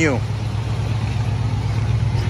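Engine of a 1967 Chevrolet C10 pickup idling steadily, a low, even rumble.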